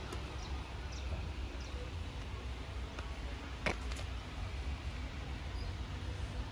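Quiet outdoor background: a steady low rumble, broken once a little past halfway by a single short click or chirp.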